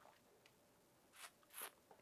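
Near silence: room tone, with two faint short breaths from a person tasting wine, a second or so in.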